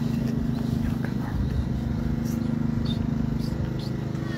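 A steady low droning hum with a few short high chirps over it, and faint voices under it.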